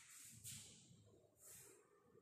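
Near silence: room tone with a few faint, short hisses.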